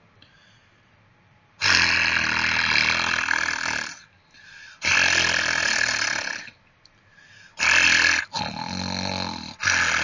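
A man's voice making three long, rasping breathy exhalations of about two seconds each, with mouth open and no words.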